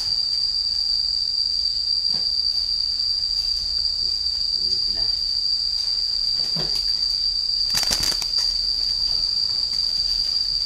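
Insects shrilling in one steady, unbroken high-pitched tone, with a brief rustle about eight seconds in.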